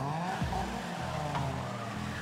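Car engine revving, its pitch gliding up and down, over a steady low rumble, with a sharp hit about half a second in.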